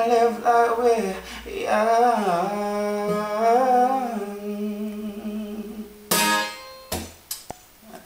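A male voice sings a wavering, drawn-out closing line over a strummed acoustic guitar, and the chord is left ringing and fading. About six seconds in there is one sharp strum, then a few faint knocks.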